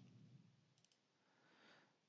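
Near silence: faint room tone with a couple of faint computer-mouse clicks, one at the start and another about a second in.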